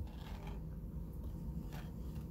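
Faint handling sounds of clay hand-building over a low room hum: a light tap at the start as a needle tool is set down on the work mat, and a soft brief scrape near the end as a small clay piece is handled.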